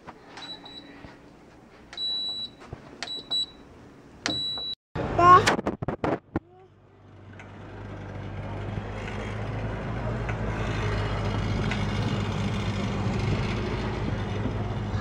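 Portable air conditioner's control panel beeping as its buttons are pressed: several short high beeps over the first few seconds. Then a child's brief squeal and a steady rumble of wind noise that slowly builds.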